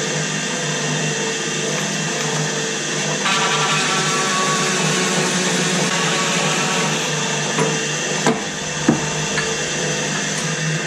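Pedestal drill motor running steadily with a large hole saw in the chuck. About three seconds in, the saw is fed into plywood and a rough cutting noise joins the motor's hum, with a few short knocks near the end as the cut goes through the board.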